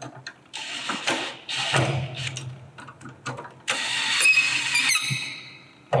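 Brushless cordless drill/driver running in two bursts, driving long screws into a threaded metal mounting bracket to tighten them. The second run's whine falls in pitch as the motor stops.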